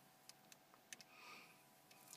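Near silence with a few faint, soft clicks in the first second: a car stereo head unit's rotary volume knob being turned, stepping the volume up at its lowest settings.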